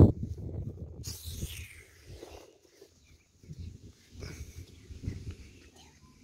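A toddler's soft, wordless vocal noises in short scattered bursts, loudest at the start, dying down in the middle and returning faintly later.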